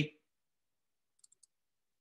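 Three faint, quick clicks a little over a second in, from working at a computer while editing a spreadsheet-like grid, with near silence around them. The end of a spoken word is heard at the very start.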